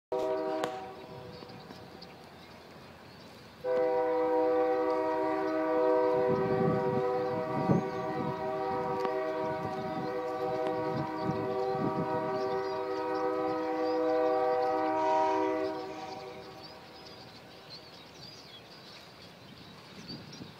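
A horn sounding several steady tones together: a short blast at the start, then one long unbroken blast of about thirteen seconds that stops a few seconds before the end. Some low thuds sound beneath it partway through.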